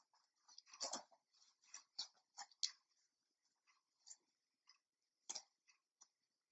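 Near silence with a few faint, short clicks and rustles, the strongest about a second in, as a person shifts from kneeling into a plank on an exercise mat.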